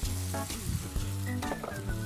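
Diced beef with tomatoes and just-added peas sizzling in a hot pot, with background music playing over it.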